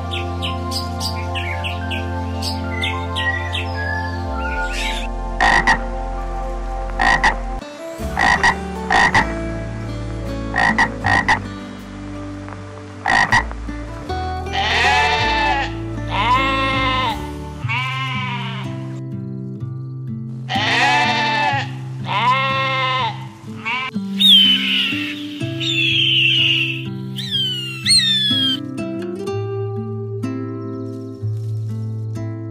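Toco toucan giving short calls, repeated irregularly through the first half. Then a domestic goat bleats in two bouts of several bleats, followed near the end by high, thin bird calls that slide downward. Steady background music plays throughout.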